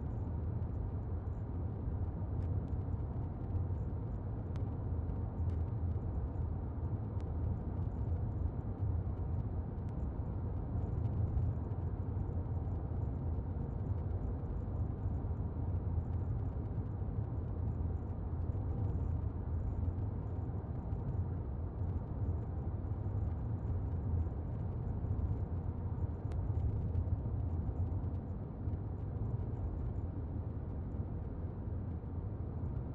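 Steady low rumble of a car's engine and tyre noise on the road, heard from inside the moving car's cabin.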